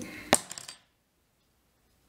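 Small metal hackle pliers set down on the fly-tying bench: one sharp click about a third of a second in, then silence.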